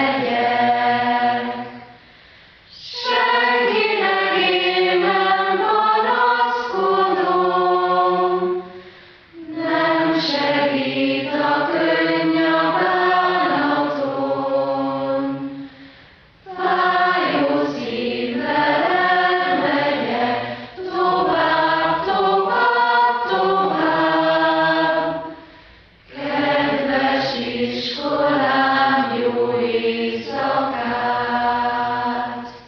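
A choir singing slow, sustained phrases a few seconds long, with brief pauses between them.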